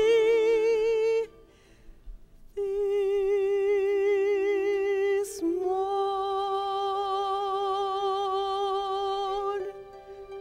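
A woman singing solo, holding long notes with a wide vibrato. The first note breaks off after about a second, followed by a short near-silent pause. She then holds a long note that slides up halfway through and carries on until shortly before the end.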